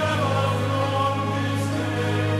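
Choral music: a choir singing long, held chords, moving to a new chord right at the start.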